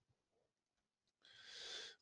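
Near silence, then a faint breath drawn in by the speaker in the last second.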